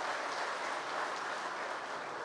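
Audience applauding steadily, an even clatter of many hands.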